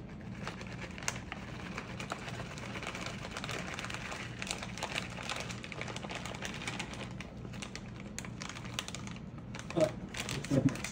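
Plastic bag of shredded cheddar cheese crinkling as it is shaken out, with a steady stream of small light ticks from the shreds landing on the casserole. A low steady hum runs underneath.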